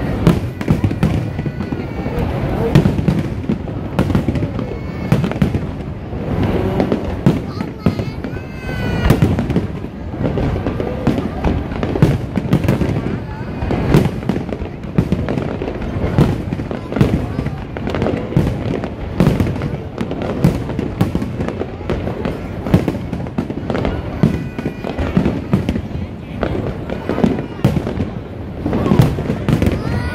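Aerial firework shells bursting in a continuous barrage, many sharp bangs a second over a steady background of booming.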